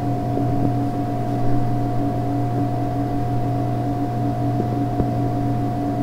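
A steady machine hum with several constant tones, holding at one level throughout. A faint click about five seconds in.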